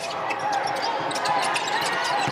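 Game sound from a basketball court: a ball being dribbled on the hardwood floor, with scattered short knocks and squeaks and faint players' voices calling out, echoing in a largely empty arena.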